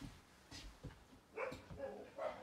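A dog making a few faint, short vocal sounds, the clearest about one and a half seconds in.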